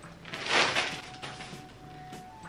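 A clear plastic packaging bag rustling and crinkling as a coat is pulled out of it, in one brief burst about half a second in, over faint background music.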